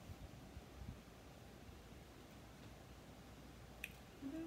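Near silence: room tone with faint handling of small paper pieces, and one small click near the end.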